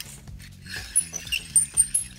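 Roto-Split armor cutter cranked around interlock armored cable, its blade cutting into the metal armor with irregular scraping clicks and small metallic clinks.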